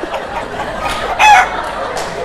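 Comic chicken sound effect: one short, loud, wavering call about a second in, over studio audience laughter.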